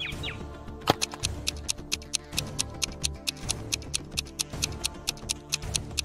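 Stopwatch ticking sound effect at about four ticks a second, starting with a louder click about a second in, over background music.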